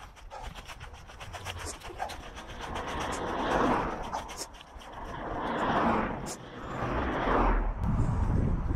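Roadside traffic noise: a few swells of road noise from passing vehicles, each rising and fading over about a second, in the middle and latter part, over faint light ticks.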